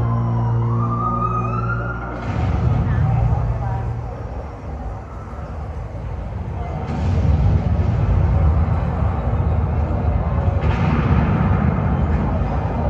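Dramatic performance soundtrack played over a hall's loudspeakers. A sustained low music drone with a rising glide gives way, about two seconds in, to heavy low rumbling effects that fade midway and swell again near seven and eleven seconds.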